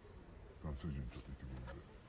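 Faint speech of people talking, with the voices electronically altered.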